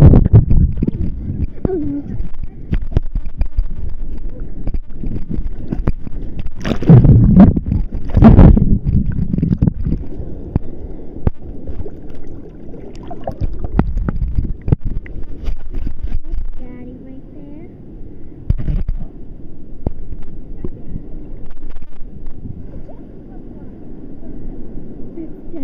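Seawater sloshing and gurgling around a camera held under and at the water's surface, heard muffled and rumbling, with two loud splashing surges about seven and eight and a half seconds in.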